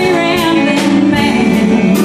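A live band playing a slow country-blues song, with electric guitars, bass, drums and keyboard. The lead line bends and slides between notes.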